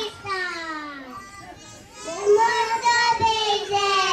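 A young child's sing-song voice over a microphone, in long drawn-out notes that slide downward, with a quieter stretch in the middle.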